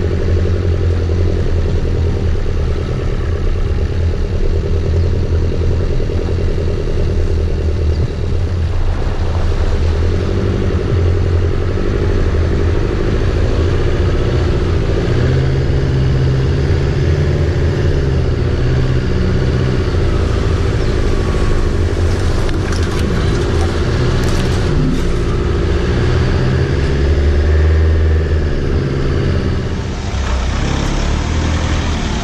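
A four-wheel drive's engine running steadily at low speed as the vehicle drives a dirt track and wades through a river crossing, with water splashing against it around the middle.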